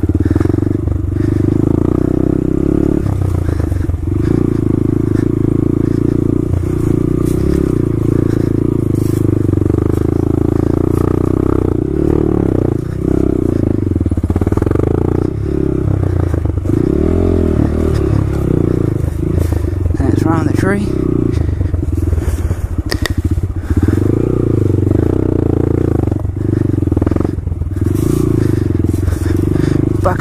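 Honda Grom's 125 cc single-cylinder four-stroke engine running as the bike is ridden off-road, its note rising and falling with the throttle and easing off briefly every few seconds.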